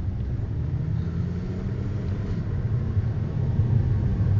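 A car's engine and tyre noise heard from inside the cabin while driving: a steady low rumble.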